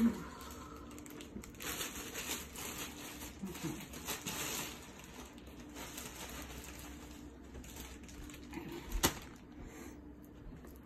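Plastic bread bag crinkling as it is handled and opened, in stretches, with one sharp knock about nine seconds in.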